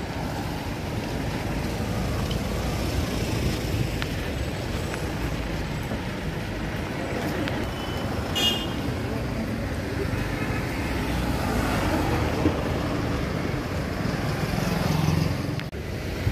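Busy road traffic passing close by, a steady noise of car, jeep and bus engines and tyres. A short high vehicle horn toot sounds about halfway through.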